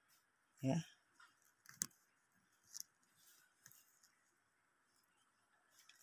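A few faint, scattered clicks and light rustles of hands handling fabric and the phone, in an otherwise quiet small room.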